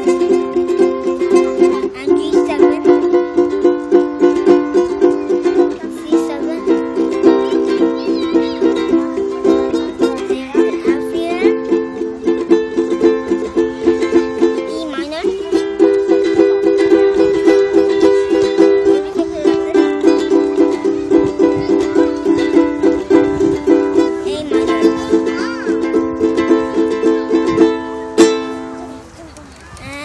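Ukulele strummed in a steady rhythm, the chord changing every few seconds; the strumming stops shortly before the end.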